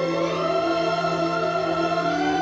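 Orchestral film score with a choir singing a slow, sustained melody that glides up and down, over a steady low tone.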